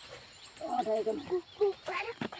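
Speech: high-pitched voices talking, starting about half a second in.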